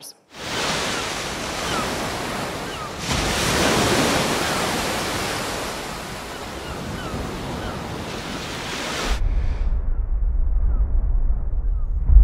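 Recording of ocean surf on Earth, a steady rush of waves that grows louder about three seconds in. About nine seconds in it switches to the same recording filtered to sound as it would in Mars's thin atmosphere: the high frequencies are cut away, leaving only a low, muffled bass rumble.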